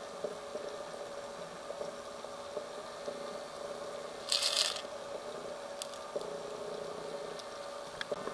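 Underwater camera-housing audio: a steady hum with faint scattered clicks, and one short loud hiss of a scuba diver's regulator breath about halfway through.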